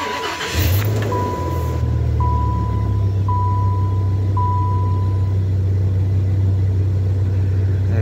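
A Dodge pickup's gasoline engine starts about half a second in, revs briefly and settles into a steady idle, running fairly smoothly at the moment despite the truck's intermittent stalling. A dashboard warning chime sounds in even pulses about once a second and stops about five seconds in.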